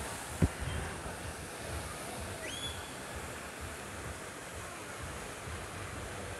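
Steady rush of a tall plaza fountain's water jet spraying and falling into its basin. A single sharp knock about half a second in, and a brief rising whistle a little later.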